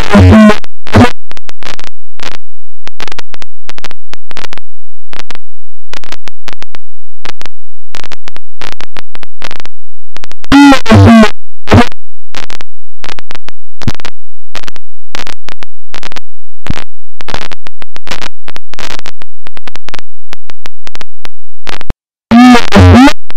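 Harsh noise music at full volume, heavily clipped: a dense, stuttering run of rapid clicks and cut-up fragments, with a short pitched, gliding sample that comes back about every eleven seconds.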